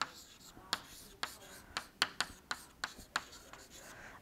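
Handwriting: a run of sharp, irregular taps, about two or three a second, with faint scratching strokes between them.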